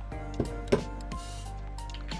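Background music with steady held notes, and two sharp clinks about a third of a second apart near the start as a glass of whisky on ice is handled.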